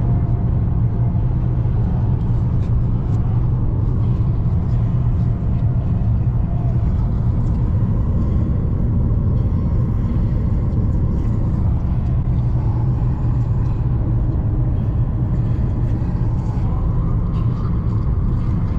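Steady low rumble of a car driving at highway speed, about 105 km/h, heard from inside the cabin: tyre, road and engine noise.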